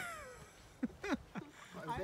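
A person's loud vocal exclamation at the start, falling in pitch over about half a second, then a few short vocal sounds and the start of speech near the end.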